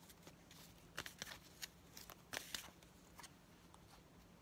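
Faint handling of a deck of fortune-telling cards: a few soft clicks and rustles as one card is drawn from the deck and lifted.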